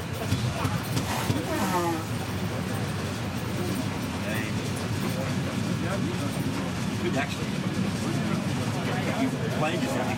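Passenger train running with a steady low rumble heard from inside the carriage, with people talking over it in the first couple of seconds.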